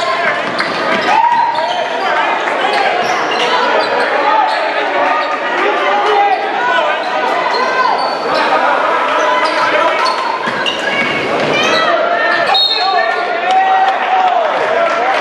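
A basketball being dribbled on a hardwood gym floor during play, with sneakers squeaking and crowd chatter filling the large, echoing gym throughout.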